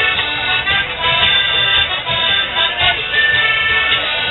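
A lively folk dance tune played on an accordion-type squeezebox, held notes moving through a melody, accompanying morris dancing.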